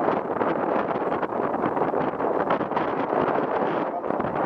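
Wind buffeting the microphone on an open boat at sea: a steady, loud rushing noise.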